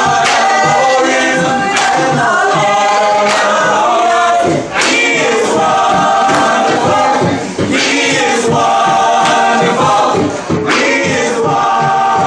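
A cappella gospel vocal group of mixed male and female voices singing in harmony, with a steady percussive beat under the voices.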